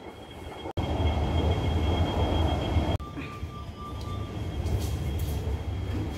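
Passenger lift running: a low rumble and hum, broken by abrupt cuts under a second in and again about three seconds in. A steady tone sounds for over a second after the second cut.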